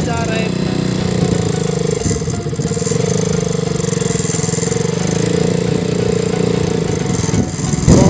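Motorcycle engine running steadily while riding along a rutted dirt track.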